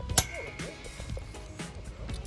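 A trampoline spring snapping into its hole in the steel frame tube: one sharp metallic clang about a quarter-second in, ringing on briefly.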